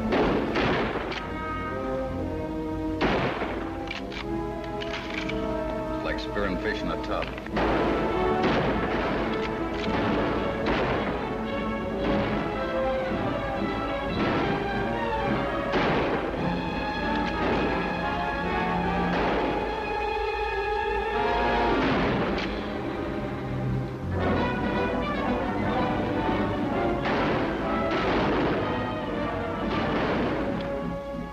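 Orchestral film score playing under repeated gunshots, with sharp bangs every second or two throughout.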